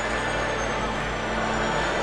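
Steady low drone with a faint high tone slowly falling over it, under a general arena hubbub.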